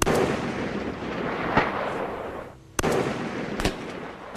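Barrett M107 .50-caliber rifle shots: a loud shot at the start with a long rolling report, a sharp crack about a second and a half in, then another shot a little before the end, followed by a further crack.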